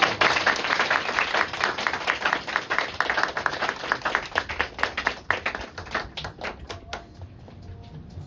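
Audience applause. It is dense at first, then thins out from about five seconds in to a few scattered claps near the end.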